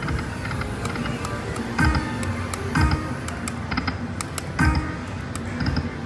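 Happy & Prosperous video slot machine spinning its reels, with game music. A low thud falling in pitch, topped by a short chime, marks each reel stop, heard three times, about a second or two apart.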